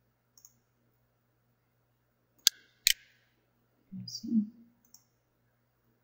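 Two sharp computer-mouse clicks about half a second apart, a brief low murmur from the narrator a little later, and a faint steady low hum underneath.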